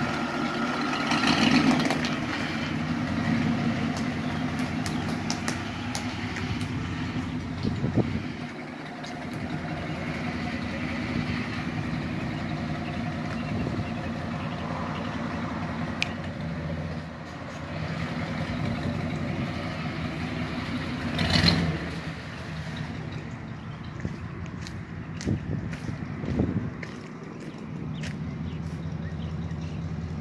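1986 Ford Thunderbird's catless, straight-piped dual exhaust with side-exit turndowns, the engine running at low speed as the car moves, its level rising and falling, with a brief louder patch about 21 seconds in.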